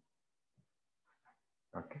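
Near silence: room tone in a pause of speech, with a few very faint short pitched sounds in the middle.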